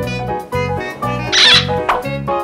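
Upbeat children's background music with a steady bass beat. About a second and a half in, a short hissy sound effect cuts across it, followed by a brief sharp click.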